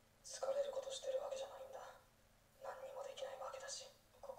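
Speech only: a young woman's voice from the anime's Japanese dialogue, two quiet, thin-sounding phrases with a short pause between them.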